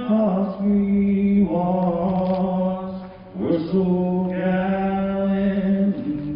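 A man singing slowly into a microphone, holding long sustained notes, with a short break about three seconds in before he rises into another long held note; no instruments are heard alongside the voice.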